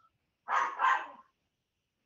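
An animal's call, heard twice in quick succession about half a second and a second in.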